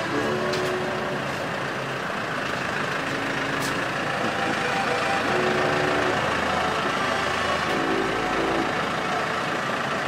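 Heavy tipper truck's engine running as the truck moves slowly past at close range, a steady rumble with a few brief clicks in the first few seconds.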